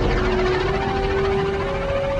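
Film score with long held notes over a dense, steady noise of spaceship engines.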